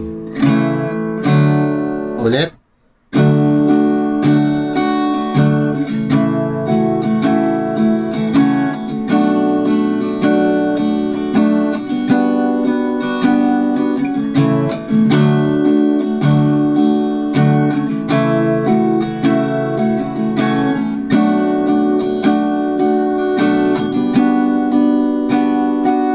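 Acoustic guitar with a capo on the second fret, strummed in a steady rhythmic pattern through the chords C, G, Am7, Fmaj7 and G. The strings are damped to a brief silence between two and three seconds in, then the strumming resumes.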